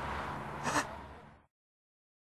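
A short gasp, a sharp breath, about two-thirds of a second in, over a low steady background hum that fades out to dead silence by a second and a half.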